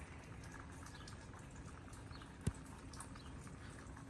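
Faint patter of falling wet snow, light irregular ticks over a low steady hiss, with one sharp knock about two and a half seconds in.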